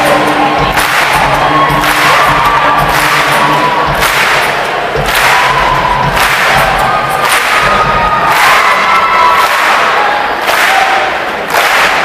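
Concert audience clapping along in time, about one clap a second, with crowd voices and whoops over the band's music. The clapping dips briefly near the end.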